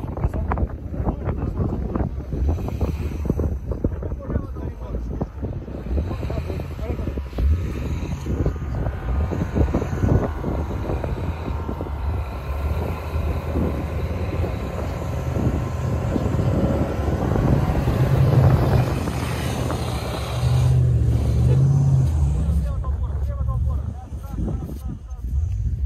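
Off-road SUV engines working through deep snow, getting louder with revving near the end, with wind buffeting the microphone.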